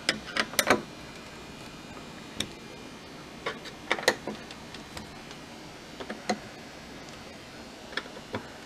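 Scattered small metal clicks and taps of a Torx screwdriver seating in and turning the screws of a stainless steel dishwasher door panel: a quick cluster in the first second, a few more around four seconds in, and one more a couple of seconds later.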